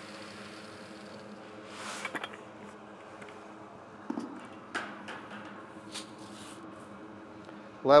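Small demonstration blower running with a steady hum while wheat pours into a clear-sided test bin with a soft hiss that stops about a second in. A few scattered knocks and scrapes follow as the grain is handled.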